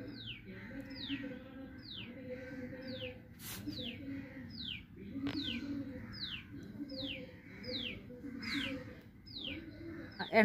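A bird repeating a short, high chirp that falls in pitch, about once a second. Two short clicks come about three and a half and five seconds in.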